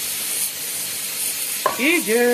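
Hot pan liquid sizzling steadily as it is poured from a frying pan over browned oxtails in a pot. A voice comes in near the end.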